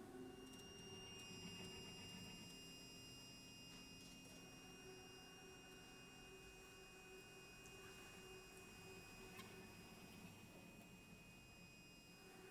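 Near silence in a quiet passage of live contemporary chamber music: a few faint, steady, pure high tones are held over the concert hall's room tone.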